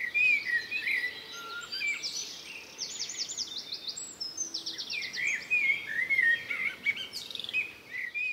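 Songbirds chirping: short, curving whistled notes repeated throughout, with two quick trills near the middle.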